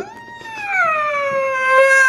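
A person's long, high-pitched wailing squeal in a fit of laughter, rising at first, then slowly falling and holding on.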